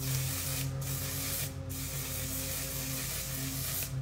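Aerosol makeup setting spray (ONE/SIZE On 'Til Dawn) hissing from the can in three bursts: two short ones less than a second each, then a longer spray of about two seconds.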